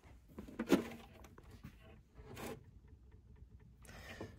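A plastic electrical enclosure being handled and opened: a few clicks and scrapes, the loudest about two-thirds of a second in and another near the middle.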